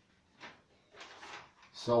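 Sheets of paper handled in the hands, two faint brief rustles, then a man begins speaking near the end.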